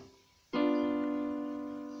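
Electronic keyboard on a piano voice: one chord struck about half a second in and held, slowly fading. It is the seven chord of a six–two–one–seven progression in C major.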